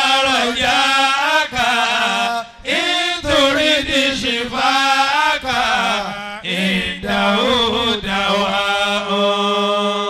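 A man's voice chanting in drawn-out, wavering melodic phrases, with a brief break partway through and one long held note near the end.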